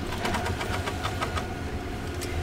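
Electric sewing machine stitching steadily, a rapid even ticking of the needle over a low motor hum, as it stitches yarn down onto fabric through a couching foot.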